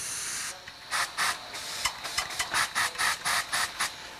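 Compressed air hissing from a Positech pneumatic vertical lift cylinder's controls: a steady hiss for about half a second, then a rapid series of short puffs as the control is tapped to creep the lift upward in small steps.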